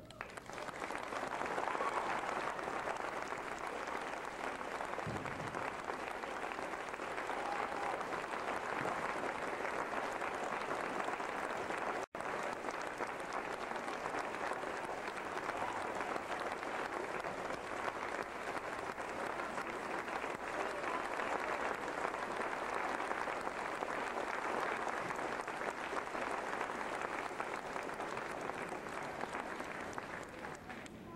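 Large audience applauding steadily, with a momentary dropout in the sound about twelve seconds in.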